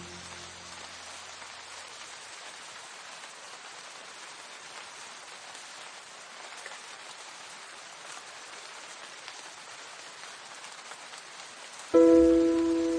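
Steady rain falling, an even patter with no pitch, as a rain ambience bed. The last piano notes die away in the first second or two.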